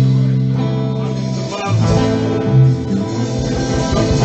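Live band music led by guitar, with no singing: long held low notes for the first second and a half, then further sustained notes.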